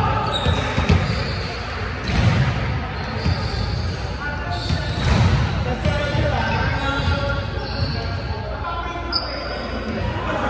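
Players' voices echoing in a large gymnasium, with a few sharp thumps of a ball, the clearest about a second in.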